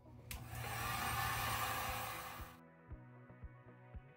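Handheld heat gun blowing for about two seconds, drying freshly brushed chalk paint; it starts just after the beginning and cuts off suddenly. Background music with a steady beat plays under it.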